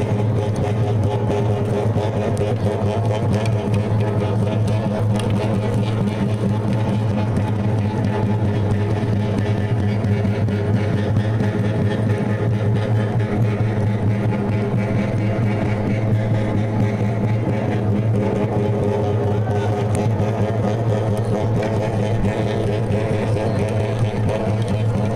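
Rarámuri frame drums beaten in a fast, continuous rhythm, the strokes blending into a steady low drone that does not let up.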